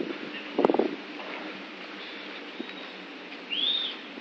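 Empty freight hopper wagons rolling slowly along the rails with a steady low running noise. There is a brief clatter about half a second in, and a short high squeal that rises and falls near the end.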